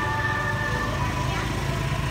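Busy market ambience: background Christmas music with a held note that fades about a second in, over the low, steady hum of voices and traffic.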